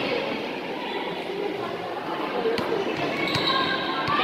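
A basketball bouncing on an indoor court floor during play, a few irregularly spaced bounces, with voices of players and spectators in the hall.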